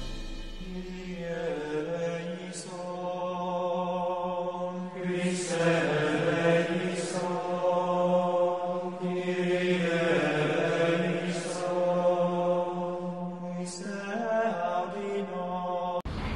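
Intro music: a chanted vocal line in long, held phrases over a steady low drone.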